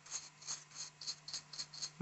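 Stiff dry brush scrubbing back and forth over a plastic wargaming terrain piece, its bristles rasping faintly about three strokes a second as it dry-brushes the surface.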